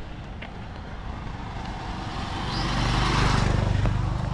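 A motor vehicle passing close by on the road, its engine and tyre noise growing steadily louder and peaking about three seconds in.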